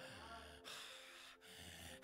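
Near silence in the pause between sermon sentences: room tone with a faint intake of breath near the middle.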